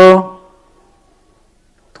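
A man's voice through a microphone finishing a drawn-out word, its pitch lingering faintly for about a second afterwards, then a pause before he speaks again right at the end.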